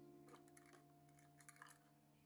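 Very faint piano music dying away on a held chord, with a few soft clicks and rattles of plastic measuring cups being lifted out of a kitchen drawer in the first second and a half.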